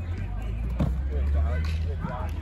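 Indistinct voices of players and coaches talking on the practice field over a low steady rumble, with one sharp knock a little under a second in.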